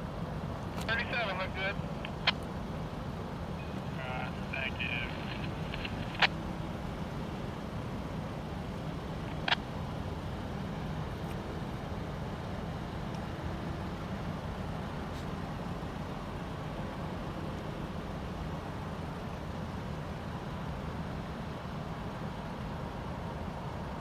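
A steady low engine rumble, with a few sharp clicks along the way.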